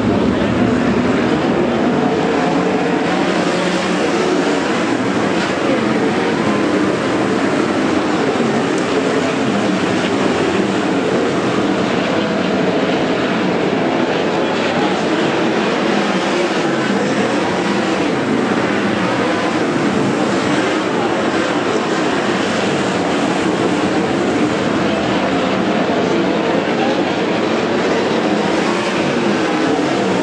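A pack of 410 sprint cars' methanol-burning V8 engines running around a dirt oval, a steady loud roar with engine notes that rise and fall as the cars circle and pass.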